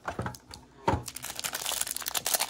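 A couple of light knocks, then the plastic wrapping on a sealed stack of trading cards crinkling as it is pulled open.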